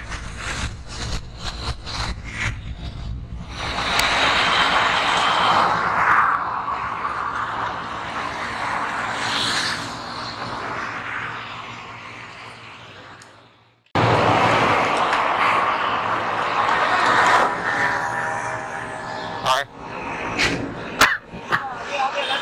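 Wind rushing over the microphone of a motorcycle-mounted camera, with motorcycle engine noise underneath while riding. The sound fades out about two-thirds in. After a cut, steadier engine and road noise follows, with a few sharp clicks near the end.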